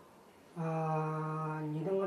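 After a brief pause, a man's voice holds one long vowel at a steady low pitch for over a second, then runs on into speech.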